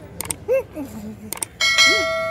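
Subscribe-button overlay sound effect: two sharp mouse clicks, then a bright bell ding that starts near the end and keeps ringing. A brief voice sound comes between the clicks.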